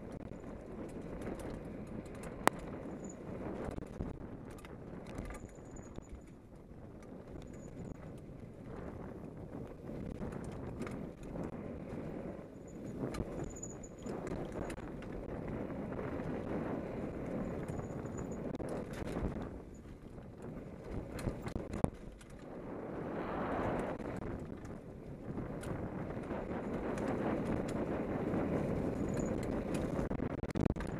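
Hardtail mountain bike descending a dirt trail: tyres rolling and skidding over earth and dry leaves, with the chain and frame rattling and sharp knocks over bumps. The noise rises and falls with speed and gets louder in the last few seconds.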